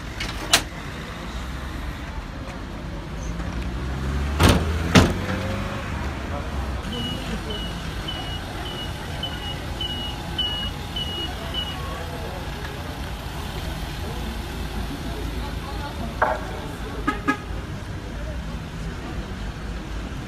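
Two loud bangs of an ambulance's rear doors being shut, then the ambulance's engine running with a run of about ten short high beeps, roughly two a second, as it pulls away; a few lighter clicks near the end.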